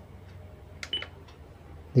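Sony car cassette stereo's front-panel button pressed with a click, answered by a short high confirmation beep about a second in, over a low steady hum.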